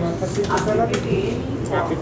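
A man's voice speaking over the steady low rumble of a train carriage.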